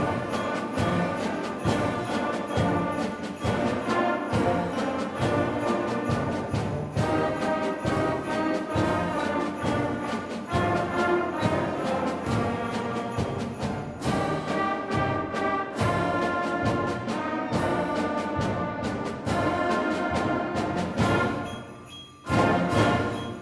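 School concert band of brass, woodwinds and percussion playing a Christmas medley, with full ensemble chords over a steady drum beat. The sound drops away briefly near the end before the band comes back in.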